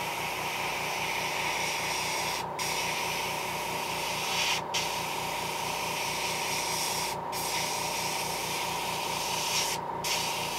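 Airbrush spraying paint in a steady hiss, cut off briefly four times, about every two and a half seconds. A steady low pulsing hum runs underneath throughout.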